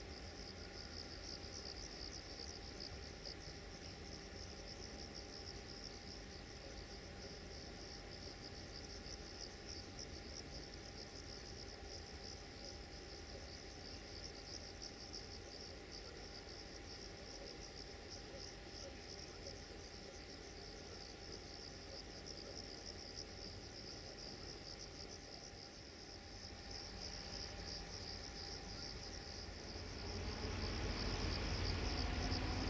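Crickets chirring in a steady, fast-pulsing high trill, with a faint low rumble underneath.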